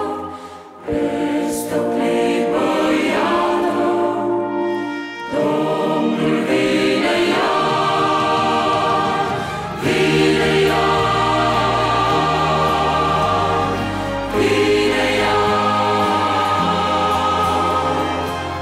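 A choir singing a Romanian sacred song with a female lead voice, accompanied by digital piano and a string orchestra with cellos. Deep bass notes come in about ten seconds in.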